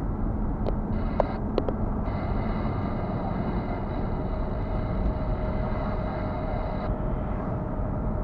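Car driving along at road speed, heard from inside the cabin: steady low road and engine rumble, with a few light clicks in the first two seconds and a faint high whine that drops out and returns.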